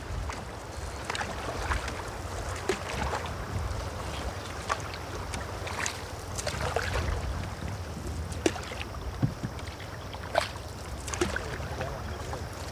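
Canoe paddling through choppy river water: a wooden otter tail paddle dips in with a short splash about every two seconds over a steady wash of water, with wind rumbling on the microphone.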